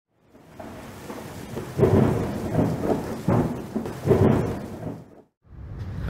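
Rain with rolling thunder: three loud peals about a second and a half apart over the steady rain, dying away shortly before the end.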